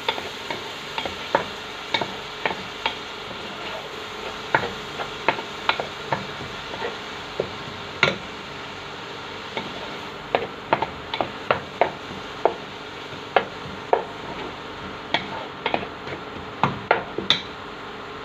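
A wooden spatula stirs and scrapes inside a large enamel cooking pot, knocking against its sides at irregular intervals of about one to two a second. Underneath is the steady sizzle of onions and garlic sautéing in oil.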